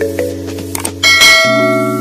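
Background music with sustained chords; about a second in, a bright bell chime rings out and fades, the notification-bell sound effect of a subscribe-button animation.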